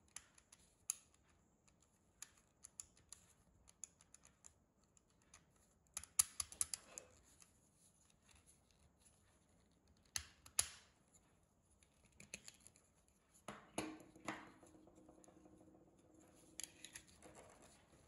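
Hard plastic clicking and rattling as guide combs are fitted and adjusted on a Beardo trimmer by hand: scattered faint clicks, with louder clusters around six, ten and fourteen seconds in.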